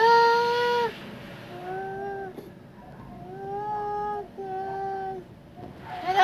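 A person crooning in a high voice: four long, steady held notes, the first the loudest.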